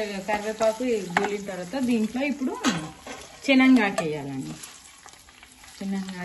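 Wooden spatula stirring mint and curry leaves as they fry in a steel pan: sizzling, with scraping and tapping strokes against the pan. A pitched, voice-like sound comes and goes over it and is at times louder than the frying.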